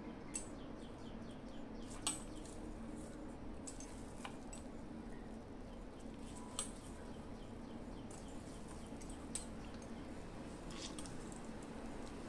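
Squeezed, soaked soya chunks dropped into a stainless steel mixer-grinder jar: scattered faint taps and clicks against the metal, the clearest about two seconds in and again past six seconds, over a low steady hum.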